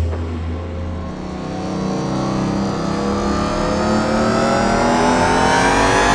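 A deep low boom fades over the first second while a racing car engine note climbs steadily in pitch, the revs rising smoothly throughout.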